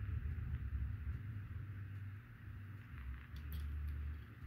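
Low, uneven rumble of a diecast Johnny Lightning Dodge van's small wheels being rolled back and forth on a cutting mat. The van has a rolling issue: a wheel wobbles.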